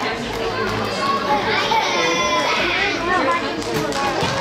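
Children's voices shouting and calling out over one another during an indoor soccer game, with one high, drawn-out shout about halfway through, ringing in a large hall.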